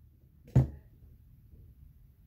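A single sharp knock about half a second in, which is taken to be wind driving tree branches against the bedroom window.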